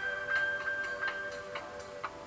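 Soft background elevator-style music: sustained held notes with a light, clock-like ticking.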